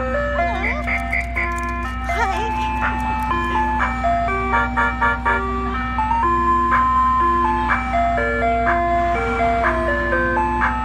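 Ice cream truck's chime playing its jingle, a melody of bell-like notes, over a steady low hum from the parked truck.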